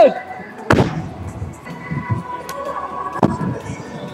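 Stunt scooter and rider landing on a wooden skatepark ramp: one sharp, loud bang with a short ringing tail under a second in, then lighter knocks and wheel clatter as the scooter rolls on.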